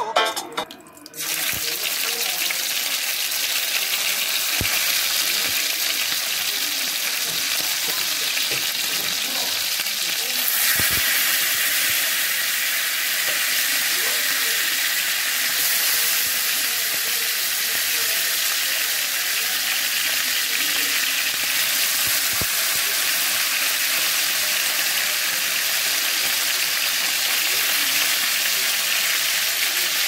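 Marinated cusuco (armadillo) meat frying in a stainless steel pan, a steady sizzle that starts about a second in and grows a little fuller about ten seconds in.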